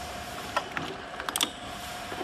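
Rotary ROPP aluminium-cap capping machine running with a steady hum, with sharp metallic clinks about half a second in and a quick cluster of them around a second and a half in.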